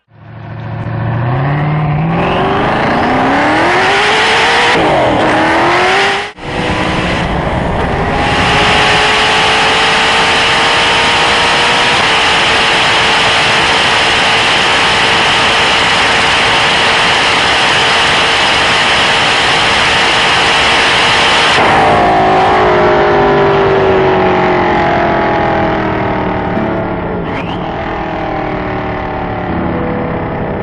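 Hennessey Venom GT's twin-turbo V8 accelerating hard, its pitch climbing through several gears with a brief break about six seconds in. It then holds a steady high note under heavy wind rush at over 260 mph for about a dozen seconds. Then the throttle is lifted and the engine note falls as the car slows.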